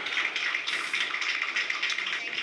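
Audience applauding, many hands clapping at once in a steady patter.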